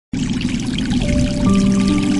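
Calm programme-intro music: a steady water-like rushing wash, joined from about a second in by held notes that enter one after another.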